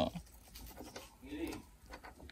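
Faint metallic clicks of a key on a key ring being worked into a motorcycle's side-compartment lock, with a short murmured hum about one and a half seconds in.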